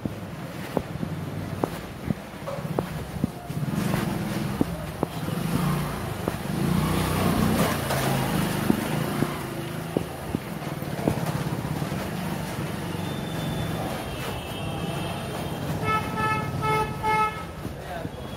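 Busy street ambience with a steady low rumble of motor-vehicle engines. Near the end a vehicle horn sounds in short repeated beeps.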